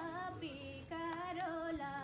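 A girl singing unaccompanied, holding long notes that step from pitch to pitch with a slight waver.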